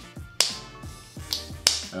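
Plastic flip-top cap on a small spice shaker bottle clicking open and shut, about three sharp snaps; the lid does not stay closed. Background music plays underneath.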